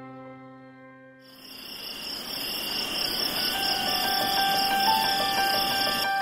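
A steady, dense chorus of crickets chirring starts suddenly about a second in, with soft music notes coming in over it from about three seconds. Before that, the earlier music fades out.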